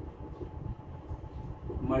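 A felt marker writing on a whiteboard, a few faint short strokes over a low rumble.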